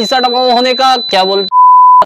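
A man's voice talking with a steady high-pitched tone under it; about one and a half seconds in the voice stops and a loud, pure electronic beep sounds for half a second.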